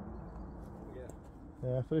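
Steady low outdoor background noise that fades out about a second and a half in, then a man starts speaking near the end.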